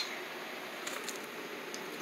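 Quiet steady room hiss with a few faint clicks of plastic building bricks being moved on carpet.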